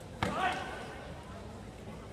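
A single sharp impact of a karate strike landing about a quarter second in, followed at once by a short shout, over the steady background of a large sports hall.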